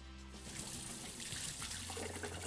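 Water running from a kitchen tap into a sink. It comes on about half a second in and runs steadily, with quiet background music underneath.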